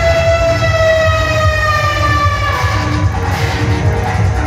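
Live stage band music: a steady drum beat under one long held note that slowly falls in pitch and fades out about three seconds in.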